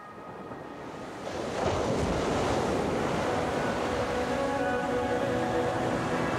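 Ocean surf, the rush of breaking waves, swelling in over about a second and then holding steady as part of the song's arrangement. Faint held musical tones sound beneath it in the second half.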